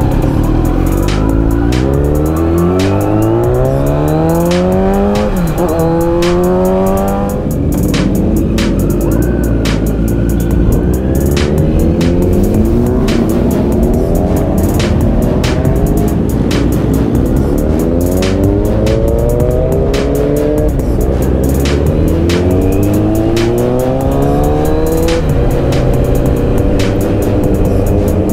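Sport motorcycle engine accelerating, its pitch rising through the revs, then dropping sharply at each quick upshift; this happens several times over a steady rush of wind and road. A hip-hop beat plays over it.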